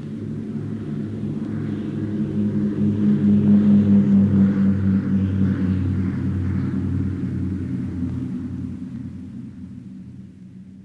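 Propeller aircraft engines droning with a pulsing note, building to a peak about four seconds in and then fading away as the plane climbs out and passes.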